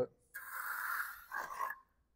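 Steel hand trowel scraping across the surface of a freshly poured concrete paver, skimming off the bleed water during finishing: one stroke of about a second, then a shorter one.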